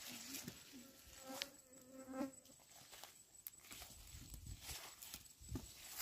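A fly buzzing close by for about two seconds near the start, over soft crackling and rustling of dry soil, roots and sweet potato leaves being pulled and handled.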